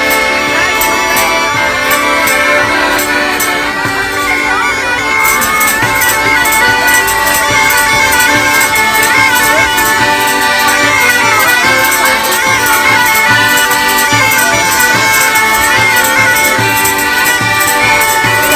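Zampogna (southern Italian bagpipe) music: steady drone tones held under a reed melody that moves up and down.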